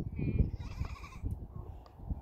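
Wind buffeting the microphone in uneven gusts, with a faint, wavering high-pitched call from a distant animal or person during the first second.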